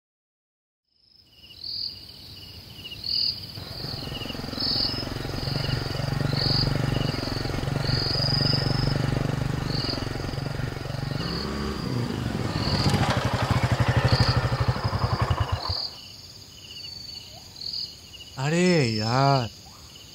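Yamaha FZ25 motorcycle's single-cylinder engine running, turning rough and then cutting out about sixteen seconds in, as it runs out of petrol, with crickets chirping steadily throughout. Near the end comes a short wavering whir of the starter cranking without the engine catching.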